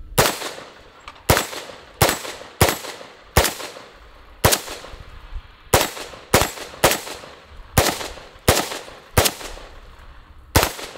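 CMMG Banshee AR-style pistol in 4.6x30mm with a muzzle brake, fired semi-automatically: about a dozen sharp shots at an uneven pace, roughly half a second to a second apart, each with a short echoing tail.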